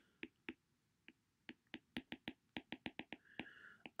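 Faint, quick clicks of a stylus tip tapping on a tablet's glass screen during handwriting. A few come at first, then a denser run of about a dozen over the second half.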